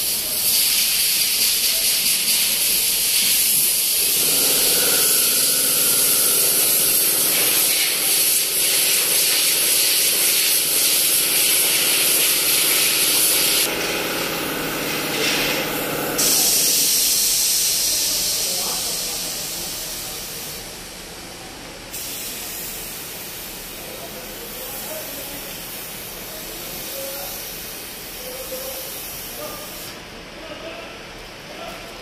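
Compressed-air gravity-feed paint spray gun hissing steadily as it lays the final coat of paint onto a car's body panels. The hiss is loud through the first half and grows quieter over the second half.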